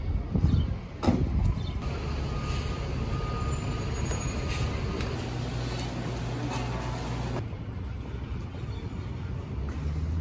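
City street traffic noise: a steady low rumble of vehicles, with two louder moments in the first second or so.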